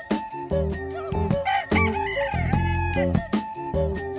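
A rooster crows once, from about a second and a half in to about three seconds, over background music with a steady beat.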